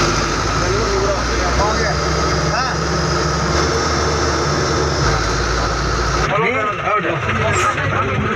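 Steady engine and road rumble of a moving bus, heard from inside the cabin, with passengers' voices in the background. The rumble drops away about six seconds in as the bus pulls up, leaving the voices plain.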